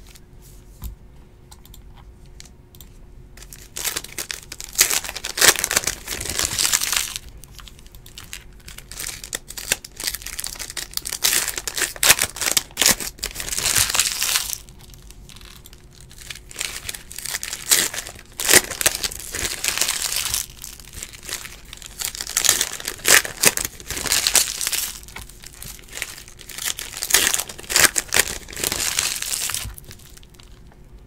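Foil Donruss Optic basketball card packs being torn open and their wrappers crinkled, with the cards handled in between. The rustling comes in repeated bouts a few seconds long with short pauses between.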